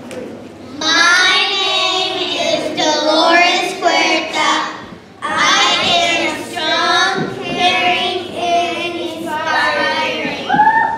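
A small group of children singing together in unison into a handheld microphone, pausing briefly about five seconds in before carrying on.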